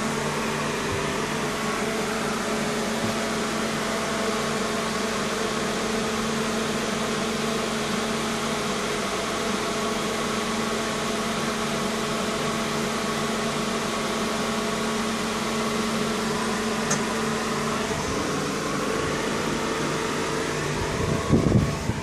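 Steady electrical hum and whir from running equipment, with several steady tones; the higher tones stop about eighteen seconds in. No arc cracks or snaps.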